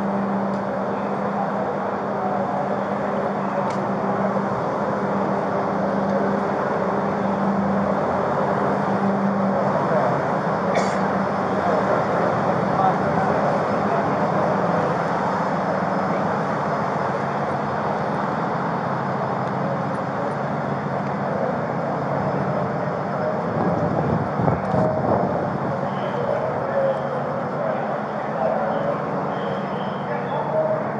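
Steady, loud din of indistinct voices and vehicle noise, with a low steady hum over roughly the first ten seconds.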